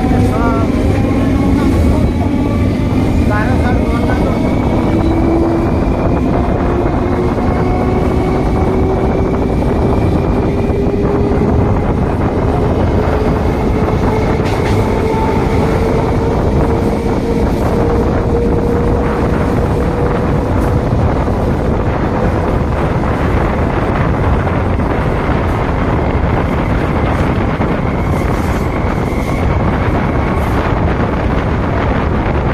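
Electric multiple-unit local train running, heard from an open doorway: steady loud rushing of wind and wheels on rail, with a motor whine that rises slowly in pitch as the train gathers speed.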